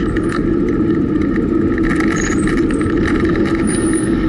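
Steady rush of wind on the microphone and tyre noise from a bicycle rolling along asphalt, with small rattling clicks scattered through it.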